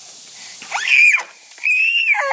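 A toddler's two high-pitched squeals: the first rises and falls about a second in, and the second is held near the end.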